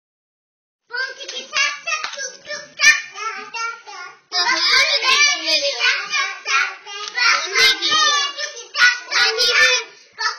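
Two young girls singing and chanting loudly together, starting about a second in.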